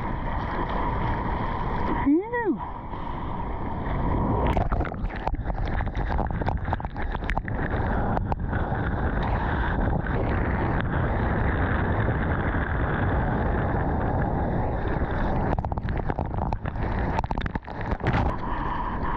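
Ocean water rushing and splashing around an action camera in the surf, with spray crackling on the housing and wind on the microphone, busiest once the wave is being ridden. A short rising-and-falling hoot about two seconds in.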